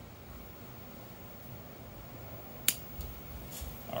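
Bonsai pruning cutter snipping off a small crepe myrtle branch: a single sharp snap nearly three seconds in, followed by a few faint low bumps.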